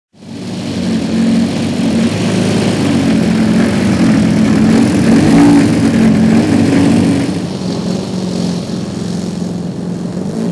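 Twin Zenoah ZG 45 two-stroke petrol engines of a giant RC Dornier Do 335 model running on the ground, in the aircraft's nose-and-tail push-pull layout. The sound fades in at the very start, swells a little around five seconds and eases back after about seven.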